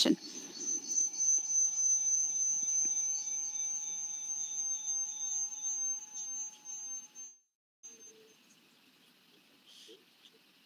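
A steady high-pitched electronic whine with a fainter lower tone beneath it, slowly fading, then cutting off suddenly about seven seconds in, leaving near silence.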